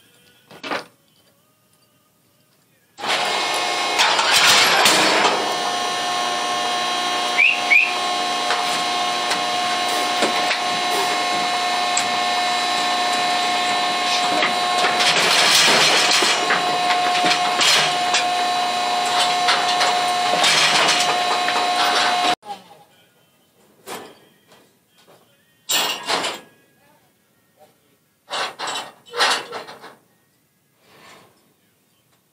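A motor-driven machine running with a steady whine, starting about three seconds in and cutting off suddenly after about twenty seconds. A few sharp metal clanks from the steel cattle chute follow.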